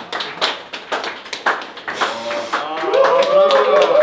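A group clapping in a steady rhythm, joined about three seconds in by several voices singing together.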